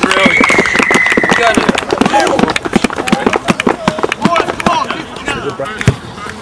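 Referee's whistle blown in one long steady blast of about a second and a half, signalling a try in a rugby match. Around it are touchline voices and irregular sharp clicks, with one sharp thump just before the end.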